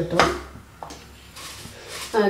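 A brief clink of kitchen utensils just after the start, with a fainter tap a little later, over quiet room background.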